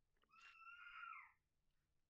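Faint animal call: one drawn-out cry of about a second that falls in pitch at its end.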